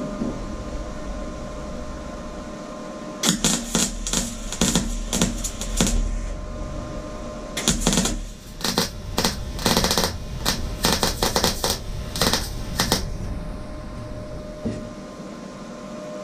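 A MIG welder tack-welding steel plate, the arc crackling in two stretches of short bursts, the first about three seconds in and the second from about eight seconds in for roughly five seconds. A steady hum runs underneath.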